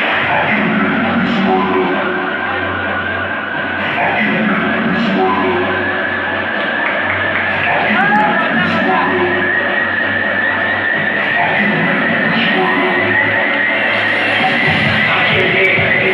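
Loud rock song with vocals and a steady heavy bass, played over a sound system in a large hall.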